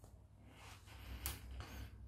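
Faint rustle of a book's paper pages being pressed and smoothed flat by hand, with one light tap a little over a second in.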